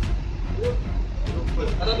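A steady low rumble of engine or traffic noise, with voices and several sharp clicks over it.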